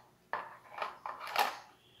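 Hard plastic clacking as a removable divider is fitted into a Tupperware Crystal Wave microwave container: three short knocks about half a second apart, the last the loudest.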